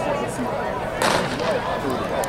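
Starting pistol fired once about a second in, signalling the start of a race, over faint crowd chatter.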